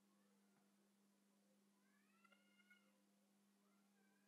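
Near silence with a faint steady electrical hum. About two seconds in there is a very faint, distant cat meow that rises and falls in pitch.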